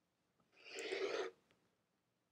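Rotary cutter rolling through folded fabric along an acrylic ruler on a cutting mat: one cutting stroke a little under a second long, starting about half a second in.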